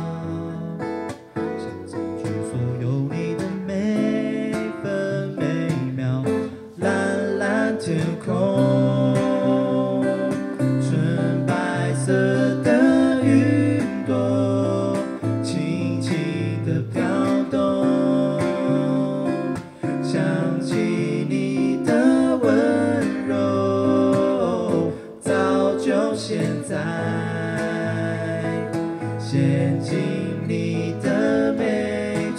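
Two acoustic guitars strummed and picked together, with a man singing a gentle melody into a microphone over them: a live acoustic duo.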